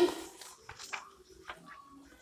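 Large sheets of sketchbook paper being lifted and turned, giving a few short rustles and crinkles.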